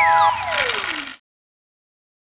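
The end of a short electronic TV jingle for an advertising break: a held synth chord under a whooshing sweep that falls steadily in pitch. The chord stops a moment in and the sweep fades out about a second in, followed by complete silence.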